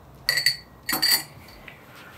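A metal bar spoon clinks twice against glass as it is set into a tall glass. Each clink rings briefly.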